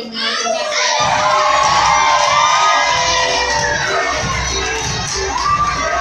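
A crowd of young people shouting and cheering together, swelling loudly about a second in.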